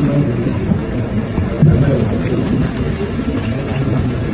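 Loud, steady babble of many voices and low room rumble in a crowded room, with no single voice standing out.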